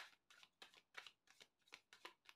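A deck of tarot cards being shuffled by hand: a faint, quick run of short papery strokes, about three or four a second, as cards are slid and dropped between the halves of the deck.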